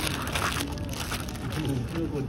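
Clear plastic zip bags crinkling and rustling as a hand rummages through a tray of bagged trinkets. The crackle is densest in the first half second.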